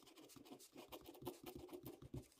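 Faint scratching of a ballpoint pen writing capital letters on paper, in a run of short, quick strokes.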